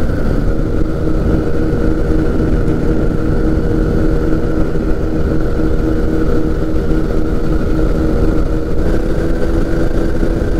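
Engine and propeller of a P&M Quik weight-shift flexwing microlight running at a steady cruise power, a constant drone, with rushing wind over the open cockpit.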